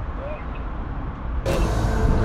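Road traffic at a junction: a steady low rumble of passing cars. About one and a half seconds in, a sudden louder rush of noise, with a finger over the lens, as the phone is handled.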